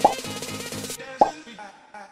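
Background music with a steady beat, with two short cartoon-style pop sound effects, one right at the start and one just after a second in; the music dies away near the end.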